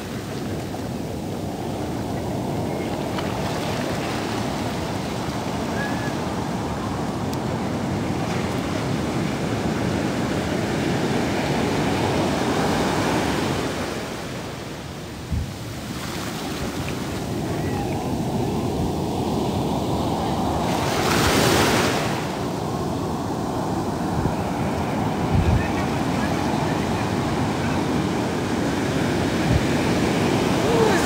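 Ocean surf: waves breaking and foamy water rushing in and washing back over the sand, a steady rush that swells to a louder surge about three quarters of the way through. Wind buffets the microphone, with a couple of brief low bumps.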